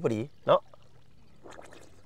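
A man's voice says a few words, then faint water sloshing and lapping as a person swims through shallow pond water.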